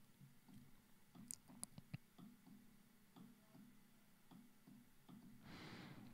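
Near silence with faint, scattered clicks of a computer mouse, a few slightly louder about a second and a half in, and a soft breath near the end.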